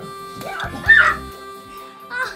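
Electronic keyboard music from a Yamaha PSR-S770 cover plays with steady held notes. A brief, loud, high-pitched vocal cry that bends in pitch breaks over it about a second in.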